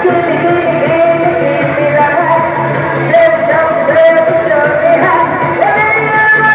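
A woman singing a pop song into a handheld microphone over loud amplified backing music, with long held notes that slide in pitch.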